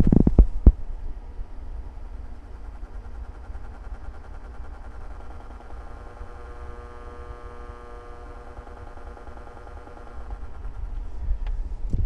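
Power transformer of a Carver MXR2000 receiver's magnetic field power supply, buzzing low and pulsing as its triac switches on and off to feed the amplifier driven at 10 Hz. A few sharp knocks come in the first second.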